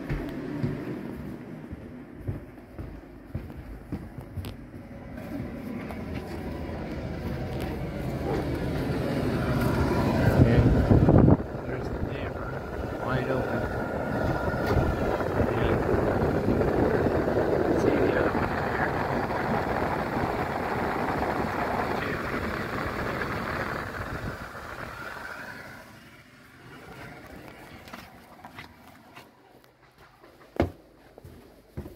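Hauslane UC-PS18-30 range hood running on its highest speed, heard as a steady rush of exhaust air from the duct's outside wall vent. The rush swells as the microphone nears the vent, with a louder low rumble that cuts off suddenly about eleven seconds in, and it fades out near the end.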